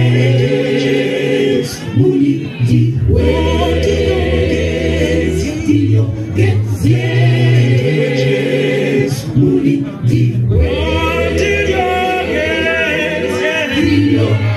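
Mixed choir of women and men singing a cappella gospel through stage microphones, with strong bass voices, in long held chords broken by short pauses every few seconds.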